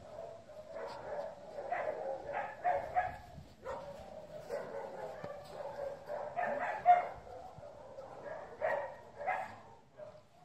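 A dog whining in repeated drawn-out, high notes, broken by a few short, sharper cries, the loudest about seven seconds in.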